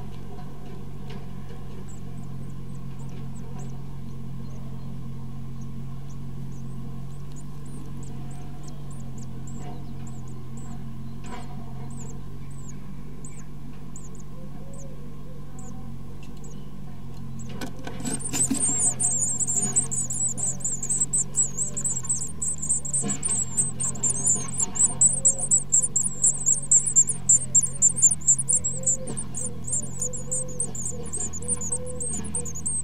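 Great tit nestlings begging in the nest box: faint scattered cheeps, then a sudden, dense, high-pitched chatter of calls about two-thirds of the way in that grows louder in pulses as an adult reaches the nest. A steady low hum runs underneath.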